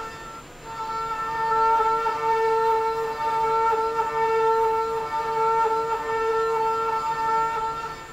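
SYIL X7 CNC mill with a 3/8-inch end mill ramping around a metal part: a steady, high-pitched cutting tone with overtones, which drops out briefly about half a second in.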